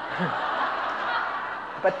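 Audience laughing together, a steady wash of many voices' laughter in response to a joke, easing off near the end as the lecturer starts speaking again.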